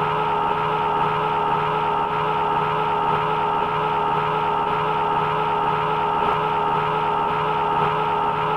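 A man's shout drawn out into one long, unbroken vowel at a steady pitch, with no breath or break, like a yell stretched far beyond natural length.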